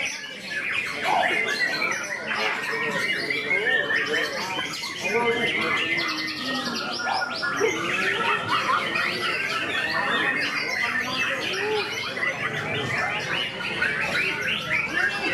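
White-rumped shama (murai batu) singing in a contest cage: a fast, varied stream of whistles, chatters and glides, with a quick, even rattle about a third of the way through. Other birds and voices sound in the mix.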